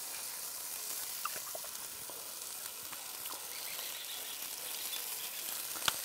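Churrascos (thin beef steaks) sizzling as they fry: a steady, even hiss with a few faint ticks.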